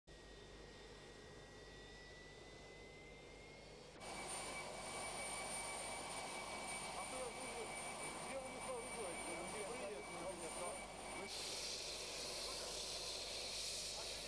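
Jet aircraft engines running as the plane taxis: a faint, slowly rising whine, then from about four seconds in a steady high whine over a rushing noise, which turns hissier about eleven seconds in.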